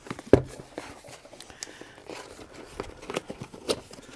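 Handling and opening a cardboard mug box: small rustles and clicks of the packaging, with one sharp knock about a third of a second in.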